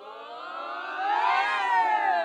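A group of boys' voices in a team cheer: a drawn-out shout that rises in pitch and swells steadily louder, loudest near the end.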